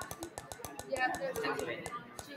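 Online spinner wheel ticking as it spins past its segments. The ticks come about ten a second and gradually spread out as the wheel slows.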